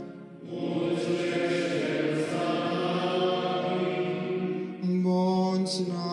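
Slow sung chant with voices holding long, steady notes. A new phrase starts a little before five seconds in.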